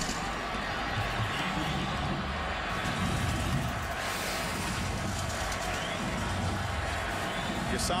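Football stadium crowd noise after a touchdown: a steady, dense din of many voices picked up by the broadcast's field microphones, growing brighter about halfway through.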